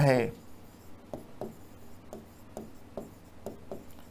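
A pen writing on an interactive smart-board screen: a quick, irregular run of light taps and scratches, about three a second, as the strokes of a handwritten word go down.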